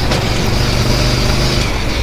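Argo amphibious ATV under way over rough ground, its engine running at a steady low note under a constant rush of noise.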